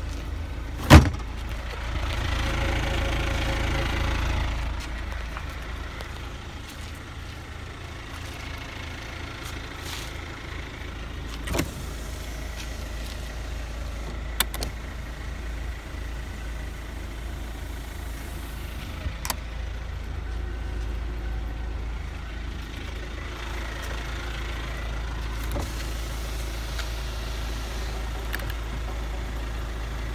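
2006 Kia Sportage's four-cylinder CRDi diesel idling steadily, with one sharp knock about a second in and a few light clicks later.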